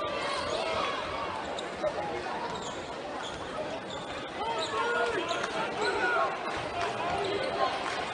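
Basketball dribbled on a hardwood court during live play, the bounces heard as scattered sharp knocks, amid indistinct voices and short gliding sneaker squeaks echoing in the arena.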